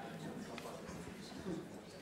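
Faint, indistinct voices over the quiet background noise of a room.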